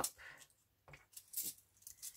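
Faint, scattered handling sounds of small sewing items: a few light taps and rustles as a card of yellow wool is set down on a cutting mat and a sewing needle is picked up.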